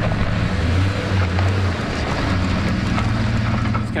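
Pickup truck engine running close by, a steady low drone.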